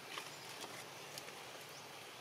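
Faint steady outdoor ambience with a few soft, light clicks scattered through it.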